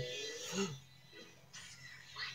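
A man's drawn-out, exaggerated 'ooh' trailing off with a short vocal noise at the end, then quiet with a steady low hum and a brief hiss.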